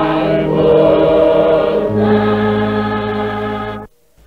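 A choir singing sustained gospel harmony, moving to a new chord about halfway through. The singing cuts off suddenly just before the end.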